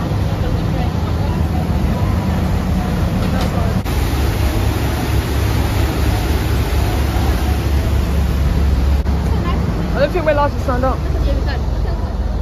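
Engines of a Thames river-bus catamaran running steadily under way, a low hum under the rushing noise of its churning wake. A voice speaks briefly near the end.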